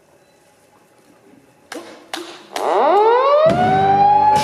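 Three sharp strikes about half a second apart, then a siren winding up in a steeply rising wail. About a second before the end a concert band comes in under it with a loud held chord.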